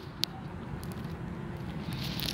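Low, steady outdoor background noise with one short click about a quarter of a second in.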